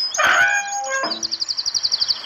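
Birds calling: a short call of several gliding tones in the first second, then a fast high-pitched trill of about a dozen notes a second.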